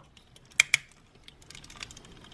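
Hard plastic parts of a DX Animus Megazord toy clicking as they are folded and snapped into place: two sharp clicks a little over half a second in, then a run of small faint clicks.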